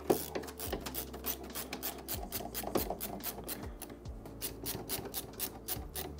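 Hand screwdriver driving screws back into the printer's frame: a rapid run of short scraping clicks, several a second, over a faint steady hum.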